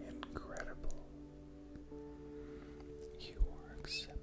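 Soft background music of sustained keyboard tones, with a faint whispered voice over it and a few small clicks.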